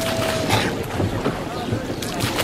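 Crowded rowboats on a river: a murmur of voices, oars knocking and dipping in the water, and wind on the microphone. A single held tone carries through the first half second and then stops.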